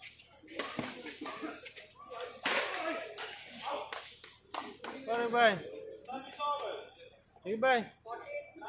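Badminton doubles rally: sharp cracks of racket strings striking the shuttlecock again and again, with a hard hit about two and a half seconds in. Short wordless shouts from the players come just past halfway and again near the end, the first of them the loudest sound.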